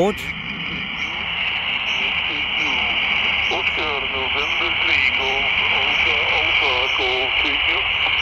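Quansheng UV-K6 handheld, modified for HF reception, playing shortwave static through its speaker while tuned to 14.215 MHz on the 20-metre amateur band. From about two and a half seconds in, a faint voice from a distant station comes through the hiss.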